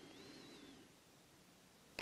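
Near silence: room tone in a pause between sentences, with a faint high whistling note that rises and then falls during the first second.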